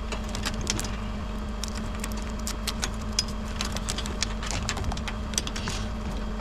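Irregular small clicks and crackles of tape being cut and pulled off a coil of fiber optic cable, with the cable being handled. Under it runs the bucket truck's engine, a steady low hum.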